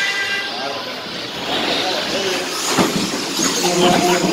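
A pack of electric RC short-course trucks racing, their motors giving a high-pitched whine that rises and falls as they accelerate. Two sharp knocks come in the last second and a half.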